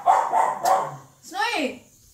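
A dog barking three times in quick succession, then giving one longer, higher call about a second and a half in.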